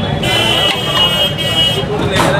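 A vehicle horn sounds one long, steady honk lasting about a second and a half, over busy background chatter.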